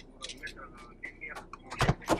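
Faint knocks and rattles inside a van as a phone is handled and turned around, ending in a louder double thump.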